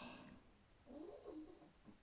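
Near silence: room tone, with a faint, brief wavering pitched sound around the middle.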